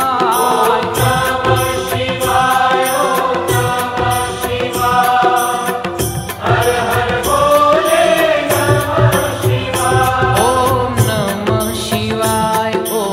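Devotional Hindu chant to Shiva sung as music, a continuous melodic vocal line over instrumental accompaniment with a steady beat.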